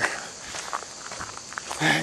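A person's footsteps while walking on a woodland trail.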